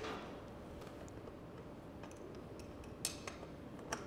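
Faint room tone broken by a few small metallic clicks of a wrench on a bicycle's rear axle nut: a couple about three seconds in and a sharper one near the end.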